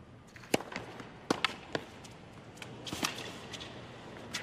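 Tennis ball struck by rackets and bouncing on a hard court during a point: a serve and then rally strokes, sharp hits about half a second to a second apart.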